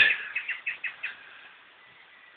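Small bird chirping: a run of about six short, quick high notes in the first second, then it falls quiet.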